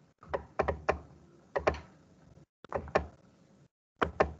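Irregular sharp clicks and knocks with dull thuds, about ten over the few seconds, arriving in clusters, coming through an online meeting's audio that cuts abruptly to silence between the clusters.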